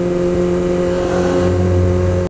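Motorcycle engine running at a steady low speed, heard from the rider's helmet microphone, with a deeper rumble coming in about one and a half seconds in.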